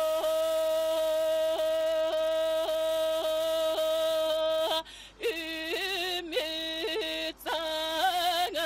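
A woman singing unaccompanied in the Sakha (Yakut) traditional manner: a long held note broken about twice a second by quick throat catches (kylyhakh ornamentation). About five seconds in she takes a brief breath, then sings a wavering, trilled passage.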